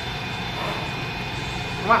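A steady background hum and hiss with no distinct event, with a word of speech right at the end.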